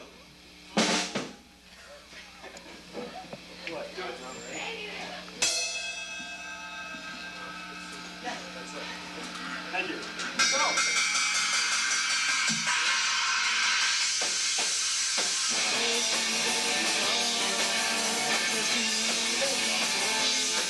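Live punk rock band starting a song: a sharp drum hit and a ringing electric guitar chord in the quiet, then about ten seconds in drums, bass and electric guitars come in together and play loud and steady.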